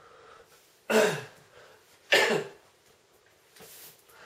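A man coughs twice, about a second apart.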